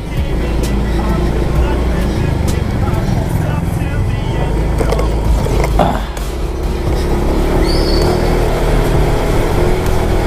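Wind rushing over the mic and a small motorcycle engine running as the bike rides along, with a steady engine hum coming up from about halfway in.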